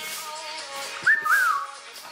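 Pet cockatiel whistling: two short gliding notes about a second in, the second rising and then falling.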